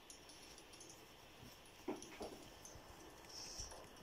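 Faint scratching of a pencil writing on paper in a quiet room, with two short squeaks close together about two seconds in.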